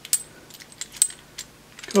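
A few sharp, irregular clicks and taps of small metal parts: a ball-swivel camera mount and its clamp being handled and fitted together.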